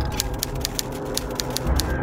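Typewriter sound effect: a rapid, even run of key clacks, about eight a second, over a low steady drone.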